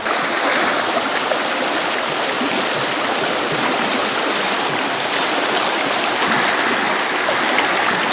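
Shallow, rocky stream running over and around stones: a steady rush of water.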